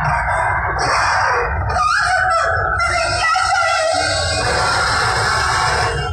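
A dhumal band playing a sawari processional tune through a loud sound system: heavy bass beat under a wavering melody line, recorded live and close.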